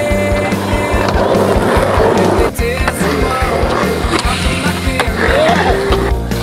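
Skateboard wheels rolling on concrete, with a sharp knock about two and a half seconds in, under loud music with a steady beat.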